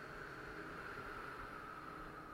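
Faint, steady background hiss with a slight hum: room tone, with no card handling.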